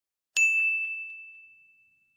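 A single notification-bell ding sound effect: one bright strike with a high ringing tone that fades away over about a second and a half.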